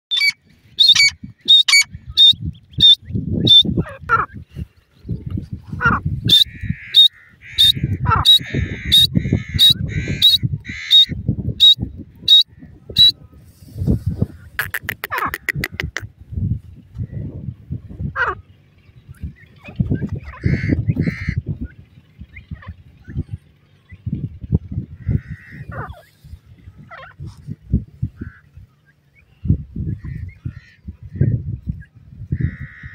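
Grey francolins calling: short, sharp, high notes repeated about twice a second for the first dozen seconds, with softer chattering under them, then a quick rapid run of notes and scattered single calls later. Irregular bursts of low rumble run underneath.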